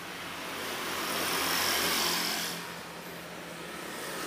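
A vehicle passing by on the road: its noise swells to a peak about two seconds in, then fades away.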